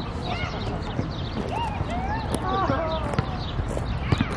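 Outdoor ambience with birds chirping in many short rising-and-falling calls over a steady low rumble, with a few light knocks.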